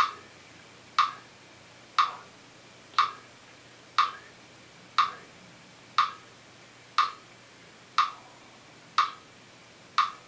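Metronome clicking steadily at about one click a second (60 beats per minute), each click identical and sharp.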